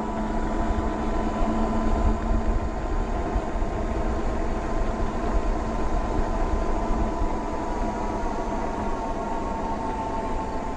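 750 W hub motor of a fat-tire e-bike whining steadily as it pulls up a long hill on throttle alone, over wind rumble on the microphone and tyre noise. The whine sags a little in pitch near the end as the motor starts to lose speed on the climb.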